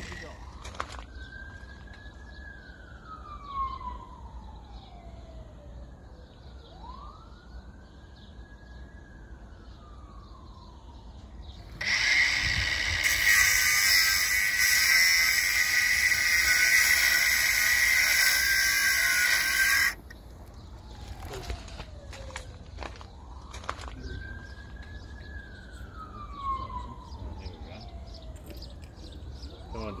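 Cordless angle grinder cutting through an old rusted steel well pipe, a loud, steady hiss for about eight seconds in the middle. Before and after the cut, a fainter tone rises, holds and slides slowly down, several times over.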